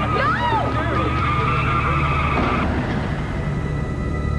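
Car tyres screeching in a skid as a car swerves and hits a pedestrian, a steady high squeal that cuts off about two and a half seconds in. A woman screams over the first second.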